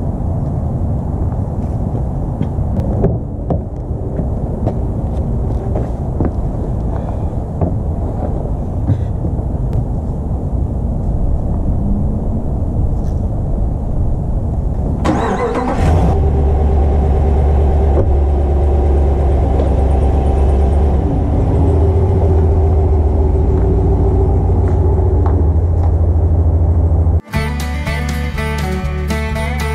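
Ram 1500 pickup truck's engine cranking and starting about halfway through, then idling steadily. Before it, scattered knocks over a noisy outdoor background; in the last second it cuts to guitar music.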